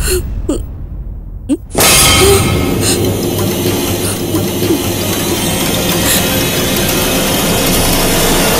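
Dramatic TV-serial background score: a quiet stretch with a couple of short pitch sweeps, then a sudden loud, dense swell of music about two seconds in that carries on steadily.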